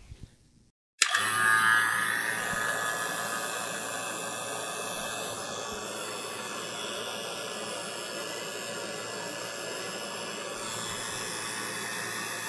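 CPS 4 CFM refrigeration vacuum pump switched on about a second in and running steadily, louder for its first second or so and then settling to an even, lower running sound as it begins evacuating the mini-split's line set.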